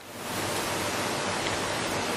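A steady hiss of even noise, swelling up over the first half second and then holding level.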